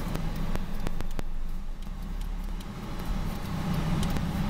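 Car engine running at low speed during reverse parking: a low steady rumble, with a few faint clicks in the first second or so.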